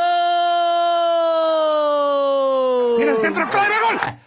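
A man's long, held celebratory shout as a goal goes in: one sustained note, steady at first, then sliding down in pitch over about three seconds. Broken talk and laughter overlap it near the end.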